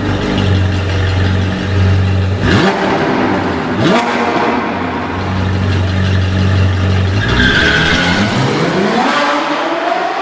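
Sports car engine sound effect: a deep, steady idle rumble broken by two quick revs about two and a half and four seconds in, then a rising whine near the end.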